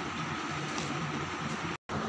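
Steady low background hiss of room noise, with no distinct events, broken by a brief total dropout of sound near the end.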